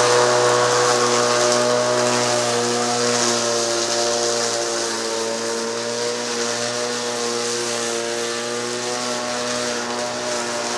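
Black & Decker electric lawn mower, powered from a 12-volt car battery through an inverter, running steadily with a pitched whir as it cuts tall, wet grass. It grows slowly fainter as the mower is pushed away.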